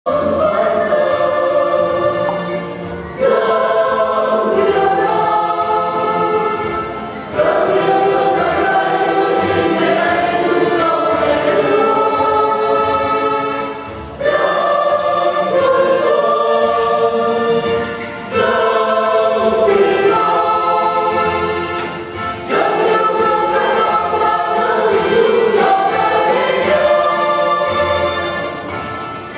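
Choir singing a hymn in long held phrases a few seconds each, with short dips between phrases.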